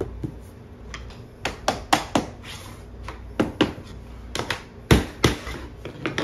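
Rigid vinyl plank flooring being handled and tapped into place: a dozen or so sharp, irregular knocks and clicks, several in quick pairs.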